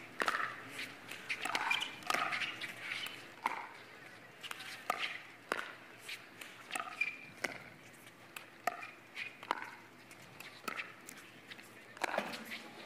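A long pickleball rally: paddles striking the hard plastic ball in a run of sharp pops, about one every half-second to a second, with short shoe squeaks on the court between hits.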